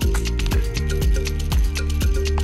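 Background music with a steady beat and heavy bass.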